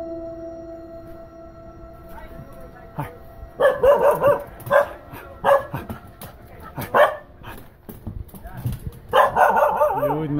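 A dog barking repeatedly in short, sharp barks and quick clusters, starting a few seconds in, while standing over a small eel-like creature on the mud.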